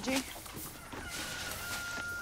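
Chickens clucking in the background, with a thin, steady high tone that comes in about a second in and holds.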